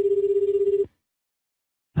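Telephone ringing tone on an outgoing call: one steady, fluttering ring about a second long, then a pause before the call is answered.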